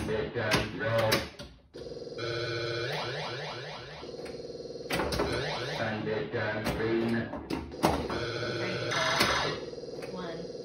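Williams Blackout pinball machine's electronic sound effects: runs of beeping tones and falling pitch sweeps, broken by sharp clicks, with a brief gap just before two seconds in.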